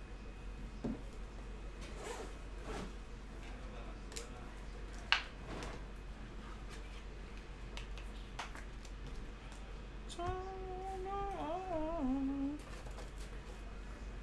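Trading cards being sorted by hand onto stacks on a table: faint soft clicks and taps, with one sharper click about five seconds in. Someone hums a short wavering phrase of about two seconds, starting about ten seconds in.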